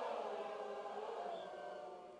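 Concert audience singing a drawn-out 'oh' together in many voices, answering the singer's call and slowly fading away.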